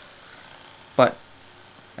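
Hyperice Hypervolt massage gun running on its slow speed, really quiet, its sound dropping away as it is swung away from the microphone.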